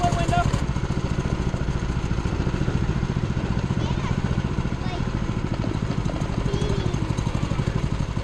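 Small go-kart engine running steadily under way, a fast even pulse with a low hum. Faint voices come through now and then.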